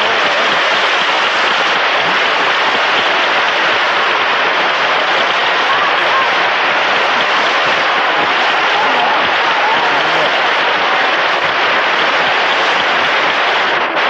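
A large concert-hall audience applauding steadily, with a few voices calling out over the clapping.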